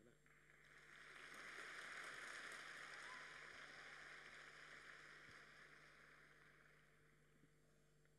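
Faint audience applause that swells over the first two seconds and slowly dies away.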